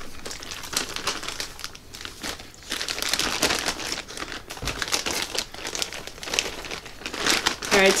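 Plastic Ziploc bag holding flour breading crinkling as it is opened and handled: a run of irregular crackles.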